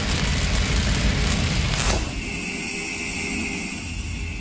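Logo-sting sound effect: a loud rumbling whoosh that changes about halfway through to a thinner sustained hiss with a steady high tone.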